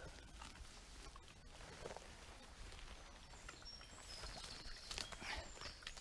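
Quiet woodland ambience: faint rustling and steps of dogs moving through wet grass and mud, with a few short, high bird chirps in the second half.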